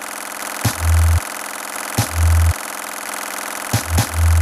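Electronic music from a Korg Volca Sample: a steady, dense, buzzing drone, cut by two heavy deep-bass notes about half a second long, each starting with a click, and another click near the end.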